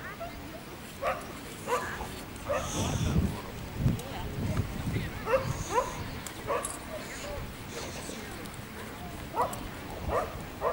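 A dog barking in short, rising yips, about nine of them spread over several seconds, with a low rumble in the middle.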